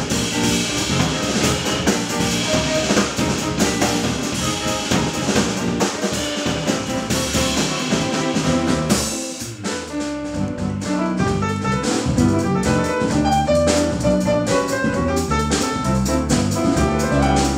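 Live jazz quartet of grand piano, guitar, bass guitar and drum kit playing an instrumental tune. Cymbal and drum strokes are busiest in the first half; after a brief dip in level just past halfway, sustained piano and bass notes stand out more.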